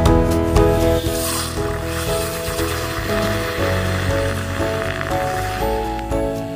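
Handheld electric milk frother whisking milk in a glass jar: a hissing whirr of frothing starts about a second in and runs under background music.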